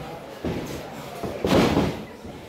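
A wrestler's body hitting the boards of the wrestling ring: a smaller thud about half a second in, then a loud slam with a short booming ring about one and a half seconds in.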